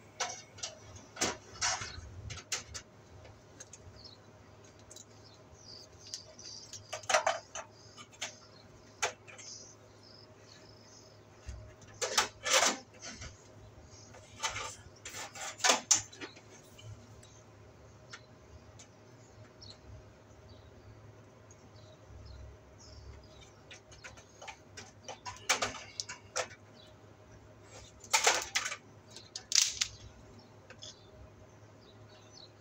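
Yellow electrical wire being pushed and pulled through grey flexible corrugated PVC conduit by hand, with short scraping and clicking handling noises in scattered spells and quieter stretches between.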